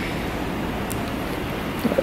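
Steady, even hiss of background noise with no pitch or rhythm, and a faint click near the end.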